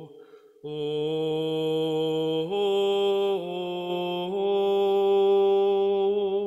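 Slow meditative Taizé chant sung with long held notes and vibrato. After a short breath just after the start, the melody rises a step, dips slightly and rises again.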